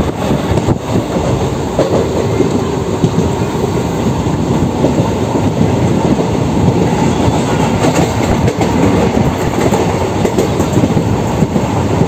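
Train running at speed, heard from inside a coach at the window: steady, loud noise of the wheels on the rails.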